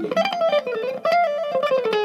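Fender Stratocaster electric guitar played in a fast run of single alternate-picked notes that move up and down, settling on a held note near the end.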